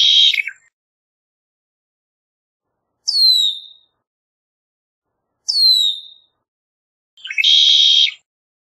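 Red-winged blackbird: a song's buzzy trill in the first half-second, then two high, falling whistled calls about three and five and a half seconds in, and near the end another song, a few short lead-in notes running into a buzzy trill.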